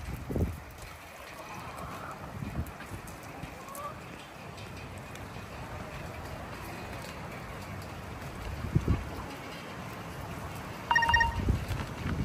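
Backyard poultry around the feeder: faint short clucks, a few dull thuds of footsteps on dirt, and one short high-pitched call near the end, the loudest sound.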